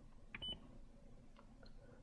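Scion iQ's Pioneer car stereo head unit giving one short high beep, just after a faint click, as its control knob is operated; otherwise near silence, with a couple of faint ticks later.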